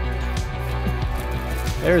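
Background music with steady sustained low tones, over the faint crinkle of a foil trading-card pack wrapper being torn open by hand.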